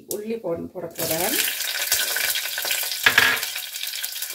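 Garlic cloves and spice seeds frying in a hot non-stick pot: a steady sizzle that starts suddenly about a second in as the garlic goes in, with a louder burst about three seconds in.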